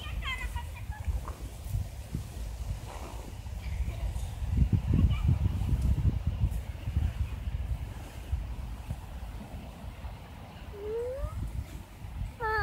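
Low, uneven rumble of wind buffeting the microphone, strongest in the middle stretch, with a child's brief high vocal sounds in the first second and a short rising one near the end.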